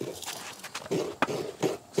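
Irregular scraping and knocking handling sounds, with one sharp click about a second in.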